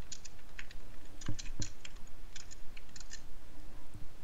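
Typing on a computer keyboard in short runs of quick key clicks, with two deeper knocks about a second and a half in. The typing stops shortly before the end.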